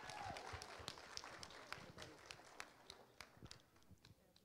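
Near silence with faint, scattered small clicks and knocks, about four a second, thinning out near the end.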